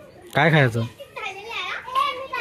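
Voices without clear words: one short, loud, lower-pitched call about half a second in, followed by children's high-pitched calls and chatter.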